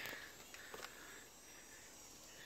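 Very quiet outdoor ambience, a faint steady hiss, with a couple of faint clicks just under a second in.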